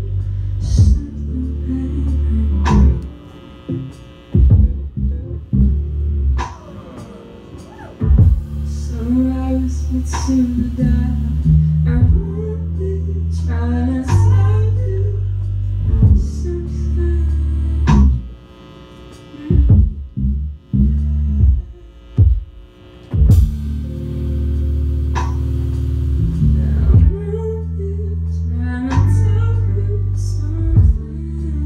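Live band playing through a PA: electric guitar and electric bass, with a man singing. Deep sustained bass notes run under rhythmic strikes, with a few brief quieter stretches.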